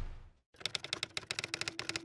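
Rapid key-typing clicks, about ten a second, from about half a second in until the end, a typing sound effect over the title card. Fading music at the start and a low steady tone from about a second in lie under it.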